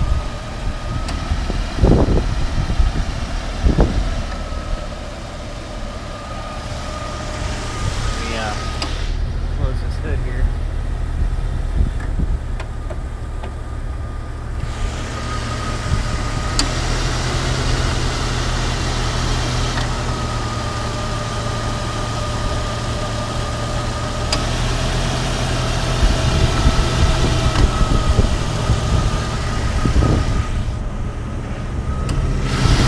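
2000 Jeep Cherokee XJ's 4.0-litre Power Tech inline-six idling steadily under the open hood, with a faint steady whine above the engine note. A couple of low thumps come about two and four seconds in.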